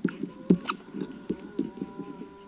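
Fingernails scratching and picking at a sticker on a small plastic lip oil tube, giving a few small clicks and scrapes spread through the two seconds.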